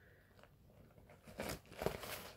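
Near quiet, then two short crinkling crunches of a cardboard box and its paper contents being handled, about a second and a half in and again near the end.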